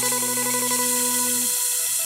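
A Thai rot hae sound-truck band plays live: a held chord under a loud hissing wash in the high end. The low notes drop out about one and a half seconds in.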